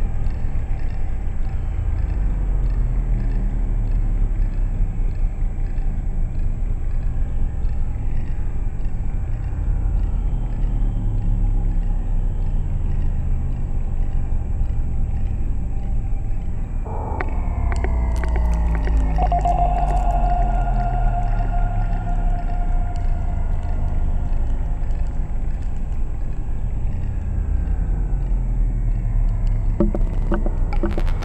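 Eurorack modular synthesizer music generated from a houseplant's biodata through an Instruo Scion module: a deep, steady drone with slow gliding tones, and faint high ticks about twice a second in the first half. About seventeen seconds in, a new voice enters sharply and then holds a steady mid-pitched tone.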